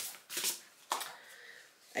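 Oracle cards being shuffled and handled for a draw: three short, crisp card flicks spread over a couple of seconds.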